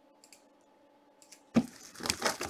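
A few light clicks of a hand on a shrink-wrapped cardboard box, then near the end a louder crackle of the plastic wrap as the box is gripped.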